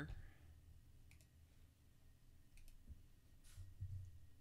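Near silence with a few faint computer keyboard clicks, two quick pairs about a second apart, over a low steady hum.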